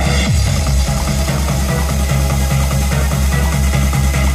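Electronic dance music from a live DJ set, with a steady, regularly pulsing bass beat under dense synth layers; about a quarter second in, a bass tone slides down in pitch.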